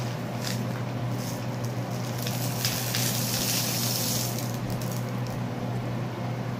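Dry rice and beans poured and stirred in plastic cups, a continuous grainy hiss that swells in the middle, over a steady low hum.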